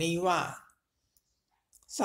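Speech: a voice reading Thai scripture aloud ends a phrase, pauses for about a second with a faint click in the pause, then goes on.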